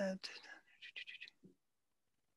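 Speech only: a spoken word ends the question, a few faint, quieter words follow, and then the voice stops.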